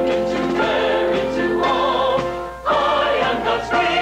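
Choral music: a choir singing long held chords, with a short break about two and a half seconds in before the next phrase begins.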